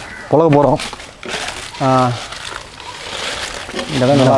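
Two brief bursts of a man's speech, with a crinkly rustling in between and after them.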